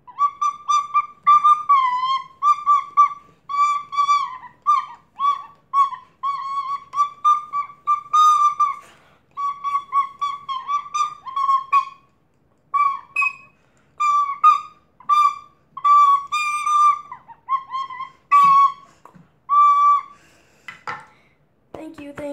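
A plastic recorder played as a simple tune of short tongued notes. Nearly all the notes sit on one high pitch with slight dips, and the playing breaks off briefly a few times. A couple of knocks sound near the end.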